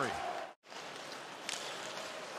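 Ice hockey arena game sound: an even wash of crowd and rink noise, cut off for a moment about half a second in and then resuming, with one sharp knock about a second and a half in.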